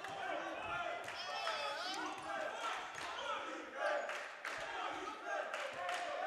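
A basketball being dribbled on a hardwood gym floor, short bounces heard among the chatter of players and spectators in the gym.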